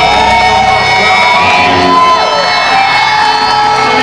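Electric guitar feedback from a live hardcore band: several steady ringing tones with some sliding in pitch, the low end of the band dropping away about a second in, with a crowd shouting.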